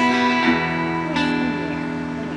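Two guitars playing the closing chords of a country song: three strummed chords, about half a second apart, that ring on and slowly fade.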